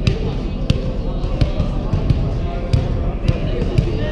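A volleyball bounced repeatedly on a hardwood gym floor, about one bounce every two-thirds of a second, with voices in the background.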